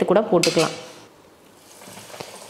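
A brief, bright scrape on a stainless steel plate about half a second in, as breaded chicken is handled in breadcrumbs.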